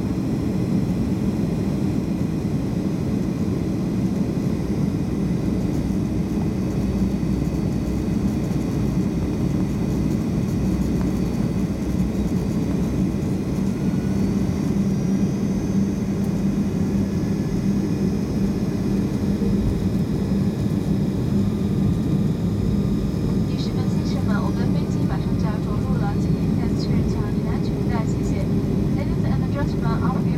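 Steady cabin noise of an airliner descending on approach: a constant low rumble of engines and airflow with a steady hum.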